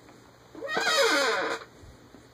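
A single wavering vocal call, falling in pitch and lasting about a second, starting about half a second in.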